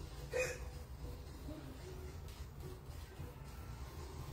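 A person hiccups once, a short sharp hiccup about half a second in, over a faint low hum.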